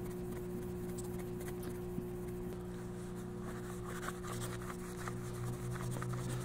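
Faint scratchy rubbing of a small hand polishing pad working compound along a stainless steel pick guard, the strokes growing more frequent in the second half. A steady low hum runs underneath.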